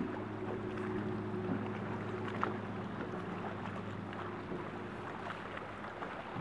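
Low, steady hum of a boat motor, growing fainter in the second half, over a constant wash of water and wind noise.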